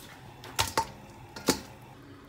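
Metal kitchen tongs clacking against the wok while lifting blanched crocodile legs out of the boiling water: a few sharp clacks in two pairs, about half a second and a second and a half in.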